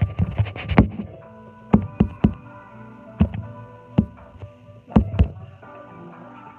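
Background music with steady held tones, cut through by about ten sharp knocks, a quick cluster in the first second, then single and paired knocks every second or so; the knocks are the loudest sounds.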